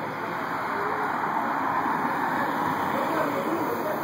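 Steady rush of traffic noise from cars moving through a parking lot, swelling a little in the middle.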